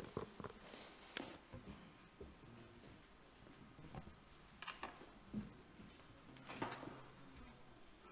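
Quiet hall room tone with a few faint, scattered knocks and shuffles as people move about and handle equipment.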